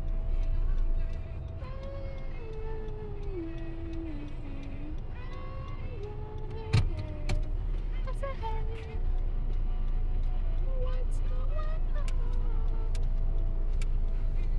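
Steady low engine and road rumble inside a car's cabin as it is driven slowly. A sharp click or knock about seven seconds in.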